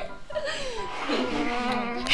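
Buzzing like a housefly, wavering up and down in pitch.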